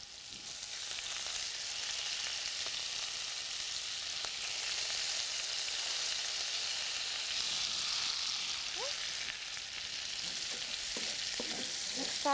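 Diced onion and minced garlic sizzling in hot bacon drippings in a frying pan. It is a steady hiss that grows louder over the first second.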